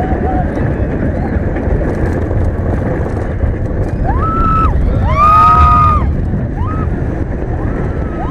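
A B&M floorless roller coaster train rumbling along its track with heavy wind noise on the microphone, as riders scream: a short scream about four seconds in, a longer, louder held scream about five seconds in, and a brief yelp just after.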